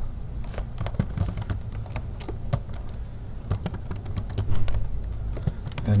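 Typing on a computer keyboard: a run of irregular key clicks as a line of code is entered, over a steady low hum.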